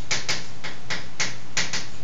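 Chalk on a blackboard as a word is written: quick, irregular taps, about four a second, over a steady hiss.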